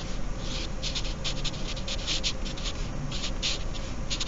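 Marker writing on paper: a quick run of short scratchy strokes as words are written out by hand, several strokes a second.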